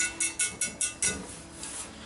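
Wire whisk beating egg wash in a stainless steel mixing bowl, clinking against the bowl about five strokes a second, with a faint metallic ring. The strokes stop about a second in as the whisk is lifted out.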